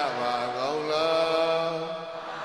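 A man's voice chanting a Buddhist recitation in long held notes: the pitch drops at the start, climbs again about half a second in, and holds.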